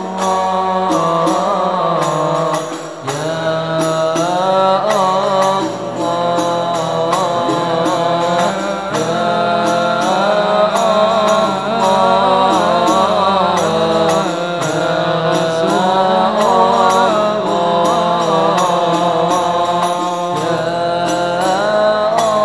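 Men's voices chanting an Arabic sholawat in a long, winding, ornamented melody, accompanied by the strokes of terbang frame drums in the Banjari style, with brief dips in loudness between phrases.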